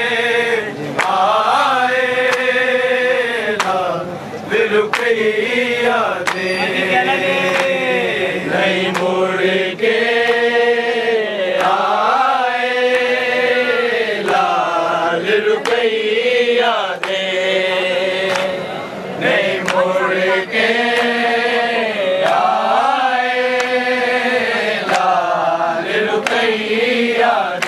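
A group of men chanting a noha, a Shia lament, in unison, in long held phrases whose pitch swells and falls. Sharp hand slaps of matam (chest-beating) are struck along with it, roughly once a second.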